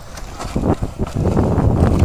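Ice sled setting off on river ice: push poles jab and knock against the ice, and the scrape of the runners builds, with wind rumbling on the microphone, from about a second in.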